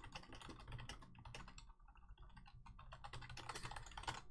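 Faint typing on a computer keyboard: a quick, irregular run of key clicks.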